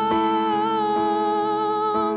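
A male voice holds one long sung note with a slight vibrato over sustained electric piano chords, with new chords struck about once a second.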